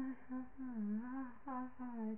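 A young woman's voice humming the song's melody without words and without accompaniment: a run of held notes that dip and rise in pitch, with short breaks between them.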